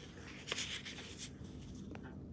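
Soft rustling and rubbing of a hand brushing hair and clothing close to the microphone, with a brief louder scrape about half a second in, over a faint steady hum.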